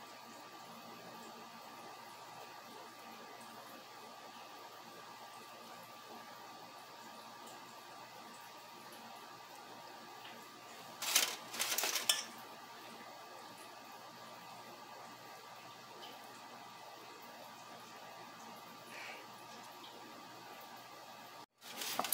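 Quiet room hiss with a faint steady hum. About eleven seconds in come two short handling noises as skin is pulled off roasted red peppers by hand over a stainless steel bowl.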